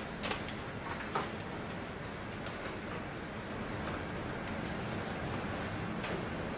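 Steady classroom room noise, with a few faint clicks or rustles, such as paper and pencils.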